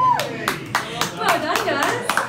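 Small audience clapping sparsely and calling out as a song ends: a sung note cuts off at the start, then scattered hand claps mixed with voices.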